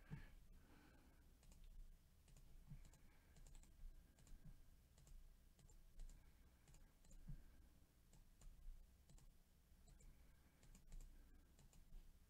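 Near silence with faint, scattered clicks of a computer mouse.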